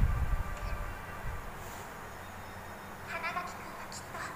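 Anime episode soundtrack: a low rumble dies away during the first second, then a short, high-pitched voice, a cry or the start of a line, sounds about three seconds in.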